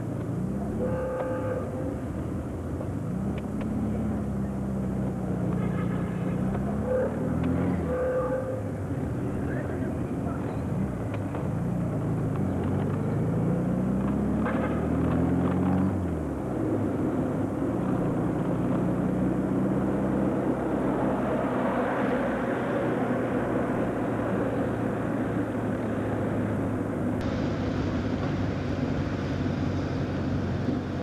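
Car engine heard from inside the cabin while driving, its pitch climbing and dropping back several times through the gears in the first half, then running steadily at cruising speed, with road noise throughout.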